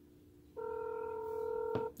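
A TickTalk 3 kids' smartwatch's speaker sounds a steady electronic calling tone while a video call is being placed. The tone starts about half a second in and stops shortly before the end, with a click just before it cuts off.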